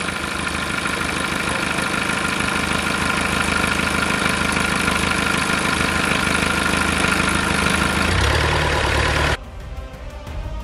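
Inboard marine engine running steadily on a test stand, its wet exhaust spraying a jet of cooling water that splashes into a tub: the freshly replaced raw-water impeller is pumping. The low engine note grows stronger about eight seconds in, then the sound cuts off abruptly to music shortly before the end.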